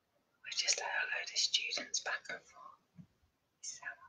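A woman whispering: a run of words in the first half, then a short whispered burst near the end.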